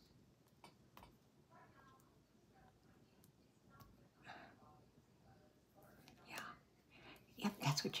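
Faint handling sounds as a peel-off seal is worked off a small plastic gel air-freshener cup: a few light clicks and crinkles, with soft muttering over them.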